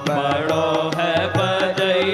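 Hindi devotional bhajan music between sung lines: a sustained melody over a quick, steady percussion beat of about four strokes a second.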